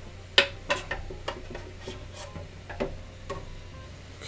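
A candle-wax pouring pitcher and the steel pot it sits in being handled while a wick is dipped into the melted wax: about six separate sharp clicks and knocks, spread over a few seconds.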